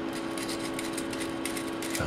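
Steady hum with several held tones and a faint noise haze from running bench test equipment, with faint scattered clicks.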